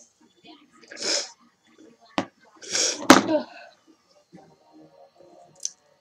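A person's breathy bursts from the mouth and nose: one about a second in, and a louder one about three seconds in that ends in a sharp, sneeze-like snap. A single sharp click comes a little after two seconds.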